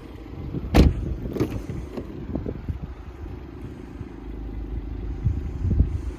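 A car door of a Mercedes-AMG CLS 53 shutting with a sharp knock about a second in, followed by a lighter knock and small clicks and low thumps of the door being handled, over a steady low hum.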